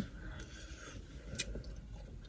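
Faint chewing as a bite of fried chicken is eaten, with a small click about one and a half seconds in.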